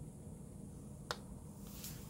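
A single sharp click a little past the middle as a spring-loaded alligator clip snaps shut on a lead at a small circuit board, followed by a soft rustle near the end.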